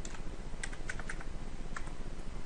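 Computer keyboard keys tapped about seven times in an uneven run of short clicks, typing a value into a software entry field.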